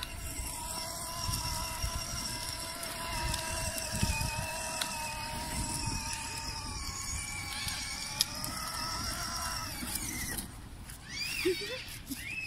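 Children's battery-powered ride-on toy motorbike running, its small electric motor and gearbox giving a steady whine, with low rumble from the plastic wheels on the paving tiles. The whine fades about ten seconds in.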